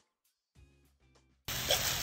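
Faint background music, then about one and a half seconds in, loud sizzling starts suddenly as sauce-coated chicken is stir-fried in a wok and stirred with a metal spoon.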